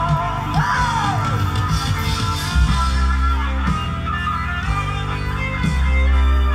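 A 1980s Korean pop song playing from a vinyl LP on a turntable, with a gliding melody line about a second in over a steady bass pattern.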